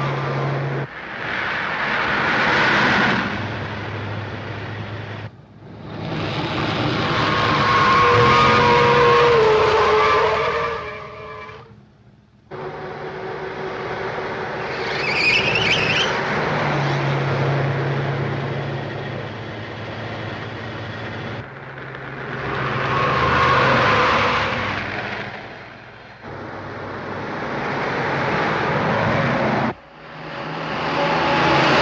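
Car-chase sound of sedans speeding hard: engines running under heavy throttle and tyre noise, with a short high tyre squeal about halfway through. The sound breaks off and changes abruptly several times as the shots cut.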